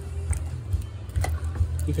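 A spoon stirring sliced beets and onion in pickling liquid in a pot, with a few light clicks against the pot, over a steady low hum.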